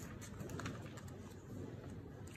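Sheets of paper and tracing paper being lifted and turned by hand, with several short crisp rustles and clicks.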